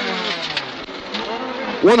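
Honda Civic rally car's engine heard from inside the cabin, its revs dropping off and then climbing again as it accelerates out of a corner.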